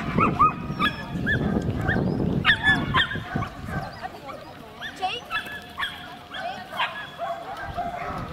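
Border collie giving many short, high-pitched yips and barks while running an agility course. The calls come thick and fast at first and thin out and grow quieter in the second half.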